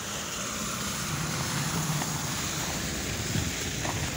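Car tyres on a slushy, snow-covered street, a steady noise.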